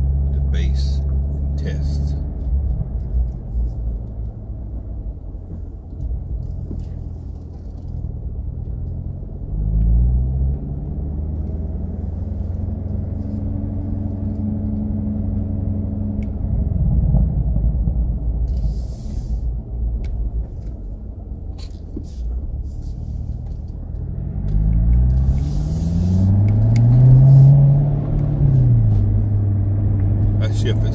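2017 Corvette Grand Sport's 6.2-litre V8 heard from the open-top cabin while driving. It runs steadily, rises in pitch as it accelerates about ten seconds in, then climbs again from about 24 seconds before dropping back near the end.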